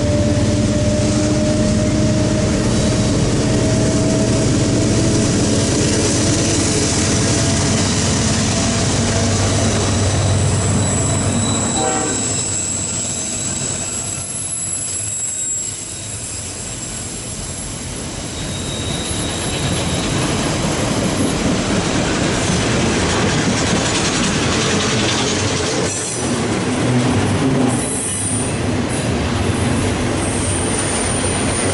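Loaded CSX autorack freight train passing close by. Diesel locomotive engines run through about the first dozen seconds. Then the autorack cars roll past with a high thin wheel squeal and a few knocks near the end.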